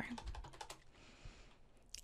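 A few quiet computer keyboard keystrokes in the first second, then a single click near the end.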